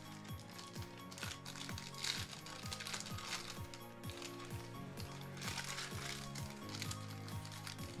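Foil wrappers of Panini Prizm basketball card packs being torn open and crinkled, in several bursts, over background music with a steady beat.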